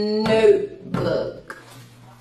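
A woman's belch: a short, rough burp about half a second in, trailing off from a drawn-out vocal note.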